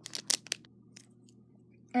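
A few short, sharp crinkles of a clear plastic LEGO minifigure blind bag being handled in the first half second, followed by a faint steady low hum until a voice starts at the very end.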